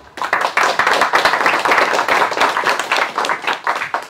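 Audience applauding: many hands clapping in a dense, even patter that starts just after the beginning and cuts off suddenly at the end.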